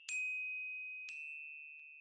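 Two high, bell-like chime notes, one at the start and one about a second in, each ringing on and fading slowly, with a faint tick near the end.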